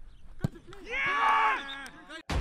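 A single sharp thud of a football being kicked, then a loud wordless shout from a player lasting about half a second, amid the knocks and calls of a shooting drill on an open pitch.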